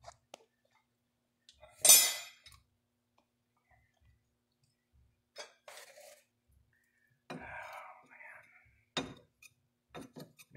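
Hand tools clinking and clanking against the metal hydraulic fittings and hoses of a backhoe, in scattered knocks, with one loud sharp clatter about two seconds in.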